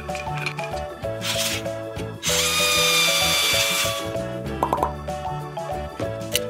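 Light background music, with a power-drill whine lasting about two seconds in the middle, its pitch sagging slightly, as a screw is driven into the toy tractor. A short hiss comes just before it.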